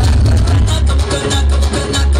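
Loud dance music with a heavy bass beat, played over a stage sound system.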